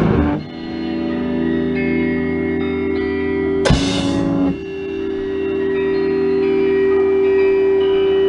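Live improvised noise-rock: amplified electric guitar holding long droning notes with a slight wobble. A sudden loud crash about halfway through briefly cuts across it before the drone settles onto a new note.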